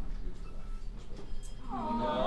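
Low room murmur, then near the end a person's voice comes in, drawn out and wavering up and down in pitch.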